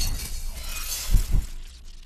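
Sound effect for an animated studio logo: a sharp crash at the start, trailing off into a crackling high hiss, with two low thuds a little over a second in. It dies away near the end.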